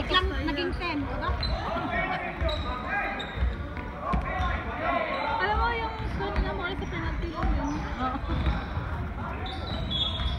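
Basketball bouncing on a sports-hall floor amid players' shouts and calls, everything echoing in the large hall.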